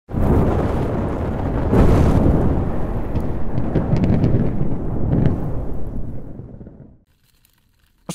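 Logo-intro sound effect of a fiery explosion: a deep rumble that starts suddenly, swells about two seconds in with a few crackles, then dies away to silence.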